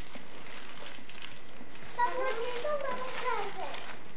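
A young child's voice, about two seconds in: a high, wordless vocal sound lasting about a second and a half, its pitch wavering and then falling. Before it there is only faint handling noise over a steady background hiss.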